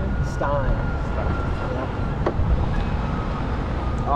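Vehicle driving slowly on a dirt track, with a steady low rumble of engine and tyres and a brief voice about half a second in.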